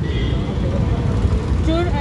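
Steady low rumble of outdoor street background noise during a pause in a woman's speech. Her talking resumes near the end.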